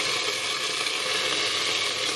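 Beef sizzling and bubbling in a covered wok on high heat as the pan juices boil off: a steady hiss under the glass lid.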